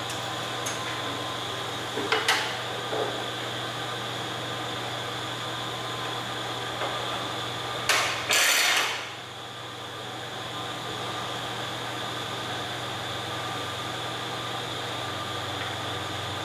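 Metal clicks as the hold-down chain of a dry-cut metal saw is released, then a louder, longer rattle about eight seconds in as the saw's motor head is swung up. A steady hum of room noise runs underneath.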